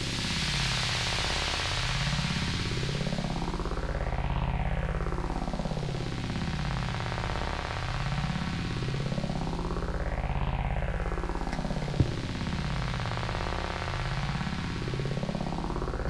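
Sustained synthesizer drone with a slow sweeping whoosh through it that rises and falls about every six seconds. A single sharp click about twelve seconds in.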